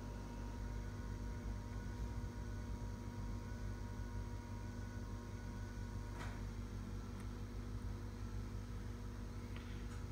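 Steady low electrical hum of a desktop computer running while it restarts and boots, with one faint click about six seconds in.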